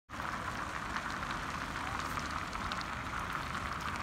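Steady outdoor hiss with faint scattered ticks and a low rumble underneath.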